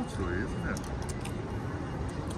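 Outdoor street background: a few brief murmured words from voices in the first second over a steady low rumble of traffic, with a few light clicks.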